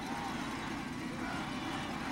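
Steady murmur of a stadium crowd in the stands at a football game.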